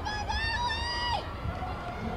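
A spectator's high-pitched cheering yell, held for about a second and dropping in pitch at the end, over the steady murmur of an arena crowd.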